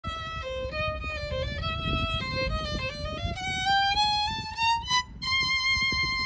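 Solo violin playing a quick run of short notes, then sliding slowly upward into a long held high note near the end.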